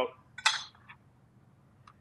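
A brief clink of a metal whisk against a glass bowl about half a second in, dying away quickly, followed by two faint clicks.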